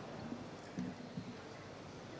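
Quiet room tone of a large hall, with a few faint soft knocks and brief low murmurs.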